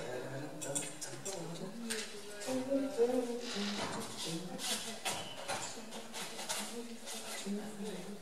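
Wordless voice sounds with intermittent clinks and clatter of small objects being handled on a desk.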